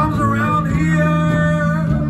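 Live rock band playing, with electric guitars, bass, drums and keyboards, and a sustained lead line that bends and wavers in pitch over a steady low end.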